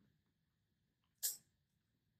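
Near silence, broken a little after a second by one short, sharp breath, a quick sniff-like intake of air.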